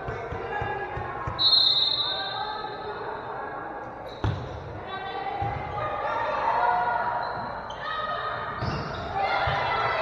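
A referee's whistle blows once, about a second and a half in, followed about four seconds in by a sharp slap of a volleyball being struck, then the rally with players' calls and spectators' voices echoing in a gymnasium.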